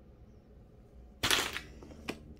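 A lip gloss tube dropped into a basket of other lip glosses and lipsticks: one short, sudden clatter about a second in.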